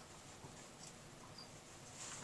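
Faint squeaks and scratches of a dry-erase marker writing on a whiteboard, with a brief high squeak near the end.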